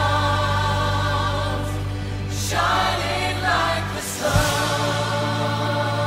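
A small group of voices singing a slow gospel song in long held notes with vibrato, over a steady low accompaniment, with short breaks between phrases.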